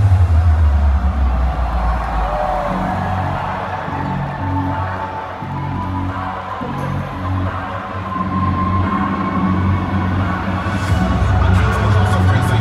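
Loud electronic bass music from a DJ set played over a concert sound system, heard from within the crowd. Heavy deep bass hits at the start, a pulsing pattern of bass notes follows, and the deep bass comes back in about ten seconds in.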